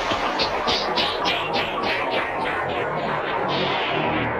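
Progressive psytrance dance music at about 140 to 145 beats per minute. A steady run of short high hi-hat ticks plays over a dense electronic mix.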